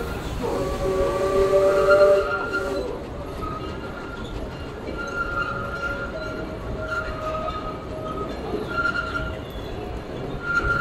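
Disneyland Railroad steam train running, its steady rumble carrying a whistle blast of several tones at once that lasts about two and a half seconds and peaks near its end. After that, brief high squeals from the wheels come and go.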